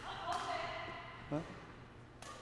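Quiet badminton-hall background with faint distant voices, and one short rising vocal sound just over a second in.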